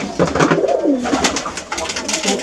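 Domestic pigeons cooing in a loft: several overlapping coos that swell and fall in pitch, mixed with scattered sharp clicks and rattles.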